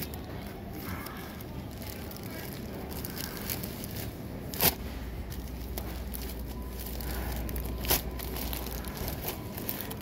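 Steady supermarket background noise, broken by two sharp knocks, one about halfway and one near the end, with a low rumble between them.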